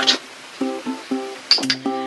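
Background music: a plucked string instrument playing a run of short, light notes.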